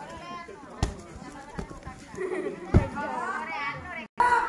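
Children's voices calling and chattering, with two sharp thuds of kicks landing on a padded kick shield, one about a second in and another near three seconds.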